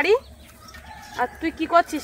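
A domestic hen clucking: a short rising call at the very start, then a quick run of about five short clucks in the second half.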